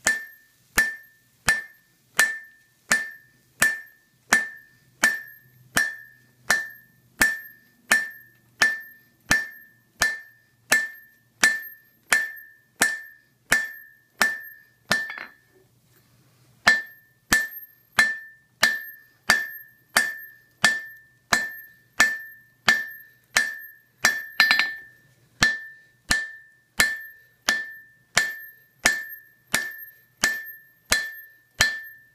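Hand hammer striking a welding-hot Damascus billet on an anvil to set the initial forge weld. The blows land steadily, about one and a half a second, each with a bright ringing ping from the anvil. The hammering stops for about a second and a half just past the middle, then resumes, with one louder blow later on.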